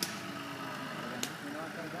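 Voices talking over a steady background noise, with a short sharp click at the start and another about a second later.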